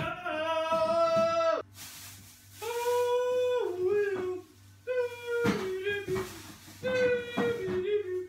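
A woman singing wordlessly in a high voice: four long held notes, each dropping in pitch at its end, with short pauses between them.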